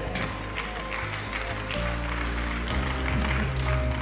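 Soft background music of held chords that change about two seconds in and again a little before three seconds.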